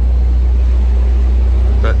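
Narrowboat's inboard diesel engine running steadily under way, a deep even throb.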